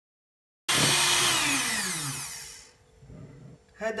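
Electric hand mixer beating cake batter in a glass bowl. It cuts in suddenly about a second in, then winds down with a falling pitch and fades to a stop within about two seconds.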